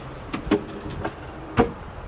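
A wooden galley drawer on a home-built teardrop trailer being pushed shut on its slides, with two sharp wooden knocks about a second apart.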